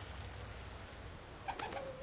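A white dove cooing about one and a half seconds in, the call opening with a few sharp clicks, over a steady low background rumble.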